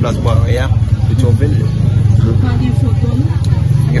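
Steady low rumble like a motor vehicle's engine running close by, under a man's voice and other voices.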